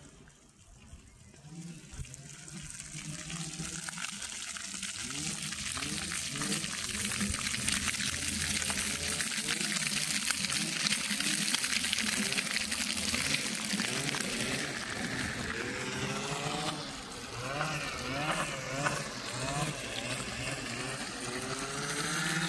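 Water splashing from the jets of a floor fountain on a paved plaza, a steady hiss that swells over the first few seconds. Faint voices are heard in the background.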